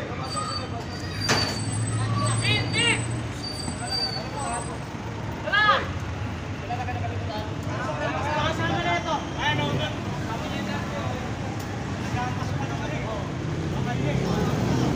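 Night street traffic noise: a vehicle engine running steadily under the scattered voices of people gathered around, with one loud call a little before halfway.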